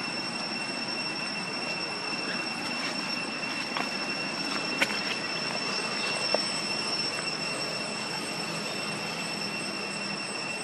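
Steady outdoor ambience: a constant high-pitched drone of two even whining tones over a background hiss, with a few short sharp clicks about halfway through.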